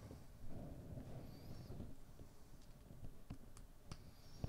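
Faint handling of small plastic LEGO pieces, with a few light clicks near the end as the pieces are pressed together.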